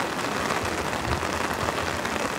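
Heavy rain falling steadily, an even hiss of downpour.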